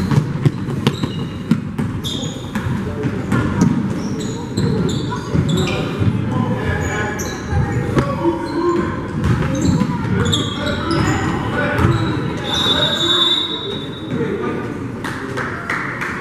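Basketball game sounds in a gym: a ball bouncing on the hardwood floor, sneakers squeaking in short bursts, and indistinct voices of players and spectators, all echoing in the hall.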